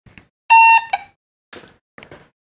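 Datascope Spectrum OR patient monitor giving one short, loud electronic beep about half a second in, as the unit powers up, with a few faint clicks of handling around it.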